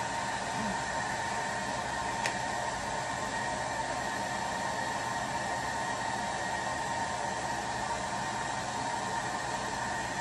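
Conair handheld blow dryer running steadily on its low setting, blowing into a soft bonnet hood dryer: a rush of air with a faint whine, and a small click about two seconds in.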